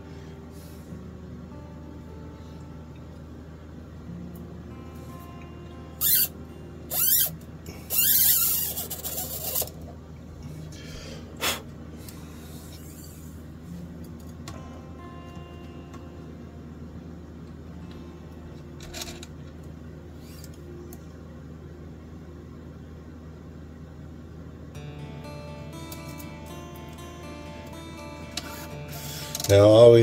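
Quiet background music with sustained tones, broken by a few short loud rustling and scraping noises about six to ten seconds in, from a new guitar string being handled and threaded through a tuner.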